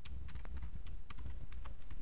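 Typing on a computer keyboard: irregular key clicks, about four a second, over a steady low hum.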